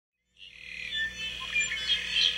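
Birds chirping, fading in from silence about half a second in and growing louder.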